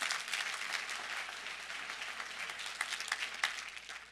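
Congregation applauding, a dense patter of many hands clapping that fades away shortly before the end.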